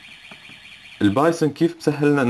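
A man's voice speaking Arabic in short, hesitant phrases from about halfway through, after a quieter first second with faint clicks and a faint wavering high tone.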